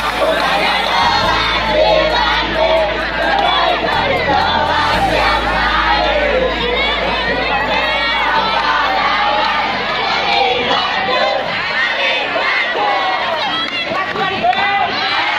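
A group of teenage students chanting and shouting a class cheer together, many voices at once, loud and lively.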